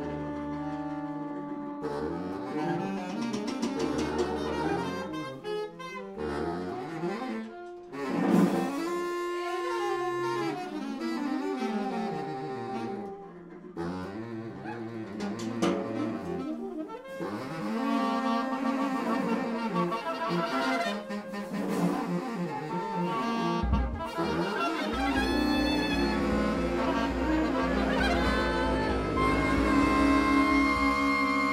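A saxophone ensemble, soprano to baritone, improvising freely with several overlapping lines that bend and slide in pitch. Near the end a low held note comes in underneath.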